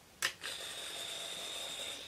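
A click, then RC model electric retracts and gear-door servos running with a steady high whine as the gear doors open and the landing gear extends.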